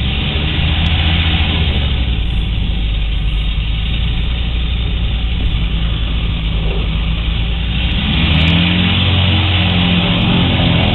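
A weight-shift trike's engine and pusher propeller running at taxi power, a steady low drone. About eight seconds in the sound changes, with gliding tones and music coming in over the engine.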